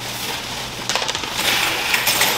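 Cash, keys and a wallet being grabbed off a wooden dresser top and stuffed into a plastic garbage bag: crinkling plastic and paper, with small clinks of keys.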